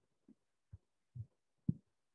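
Four soft, dull thumps in quick, uneven succession, the last one loudest and sharpest.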